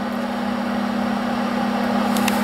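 Electric fan heater running on low, its fan blowing steadily with a constant low hum. It keeps running while lying on its side because its tip-over safety switch has been removed.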